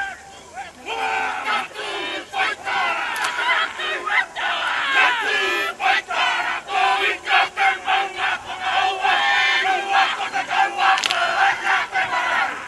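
A kapa haka group performing a haka: many voices shouting and chanting in unison with sharp, forceful accents. It starts quieter and is loud from about a second in.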